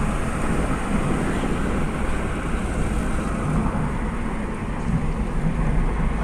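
Steady road noise inside a moving car's cabin: a low, even rumble from the tyres and engine.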